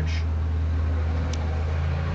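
A steady low hum, with one faint click about a second and a half in.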